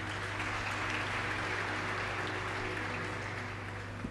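A congregation applauding steadily, easing off slightly near the end.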